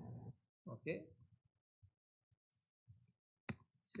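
Faint, sparse keystrokes on a computer keyboard as a short line of code is typed, with one sharper key click about three and a half seconds in.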